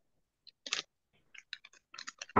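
Faint, irregular clicks: one or two in the first second, then a quick cluster of them in the second half.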